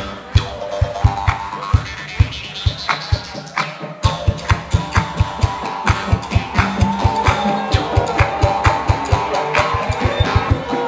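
Live band music: banjo picking over a steady kick-drum beat, with a melody line on top. The kick drops out briefly just before four seconds in and comes back in a quicker pattern.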